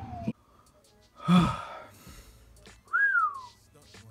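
A man whistling and gasping in admiration: a short whistle that dips and cuts off at the start, a breathy gasp about a second in, then a whistle that rises and slides down near the end.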